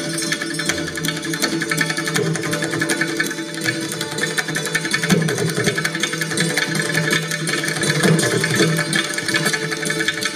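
Santoor struck rapidly and evenly with its hammers, the strings ringing in a fast run, accompanied by tabla whose bass strokes bend in pitch.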